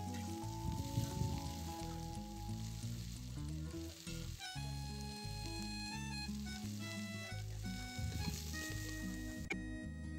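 Freshly chopped chives sizzling in hot oil in a pressure-cooker pot as they fry for the seasoning, a steady crackle with background music playing over it.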